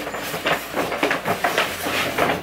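Rapid rustling and light knocking, several times a second, as items are rummaged for and handled.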